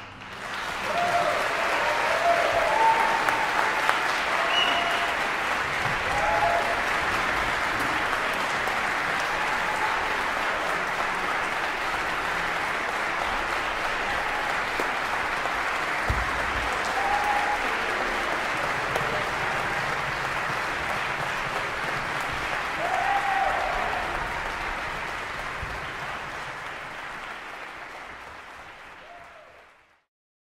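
Applause with a few cheering voices right after a string orchestra's final chord. It swells in the first second, holds steady, then fades out gradually over the last few seconds.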